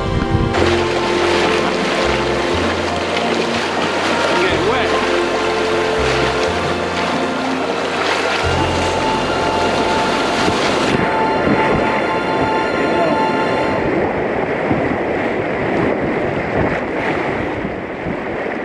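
Background music with a stepping bass line laid over the loud, steady rush of white water as a canoe runs rapids. The music drops out about three-quarters of the way through, leaving the rushing water.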